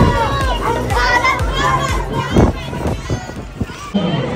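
A crowd of schoolchildren's voices calling out and talking over one another as the group walks along, with a few dull thumps a little past the middle.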